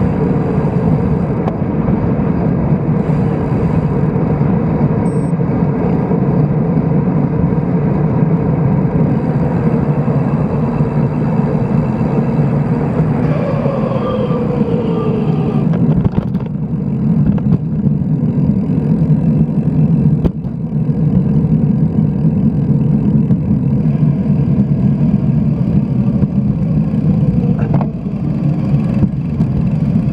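Steady rush of wind on the microphone of a bicycle-mounted action camera while riding, mixed with road noise. A short falling whine comes about halfway through.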